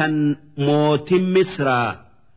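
A man's voice reciting in a drawn-out, melodic chant typical of Quranic recitation, held on long steady notes in two phrases with a short pause about a quarter of a second in.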